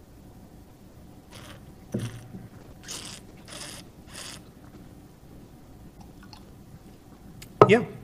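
Mouth and breath sounds of a person tasting red wine: a sip, then a few short, airy breaths drawn and pushed over the wine in the mouth, between about one and four and a half seconds in.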